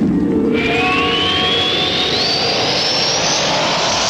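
Radio-show break transition effect: a loud, dense whoosh with music under it, and a single tone rising steadily in pitch from about half a second in, like a jet sweeping past.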